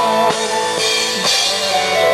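Live rock band playing: a drum kit keeps a steady beat of about two hits a second with cymbals, under sustained guitar chords.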